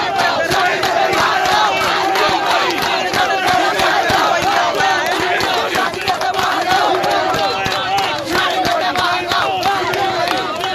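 A crowd of student protesters shouting slogans together, many voices overlapping in a loud, continuous din.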